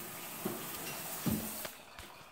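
Shower water running, heard faintly as a steady hiss that fades near the end, with two soft brief sounds about half a second and just over a second in.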